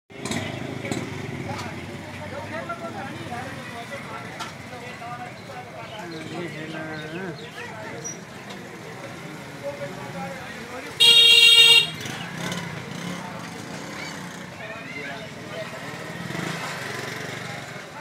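Busy street ambience with people's voices and passing motorcycles. A vehicle horn sounds once, a single steady honk lasting just under a second about eleven seconds in, the loudest sound.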